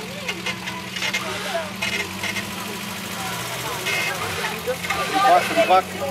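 Off-road 4x4's engine idling steadily with an even low hum, under the voices of people talking and calling nearby, which grow louder near the end.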